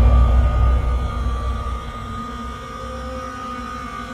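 Trailer sound design: the low rumbling tail of a heavy boom, fading over the first two seconds, under a sustained eerie drone of a few steady tones that carries on quietly.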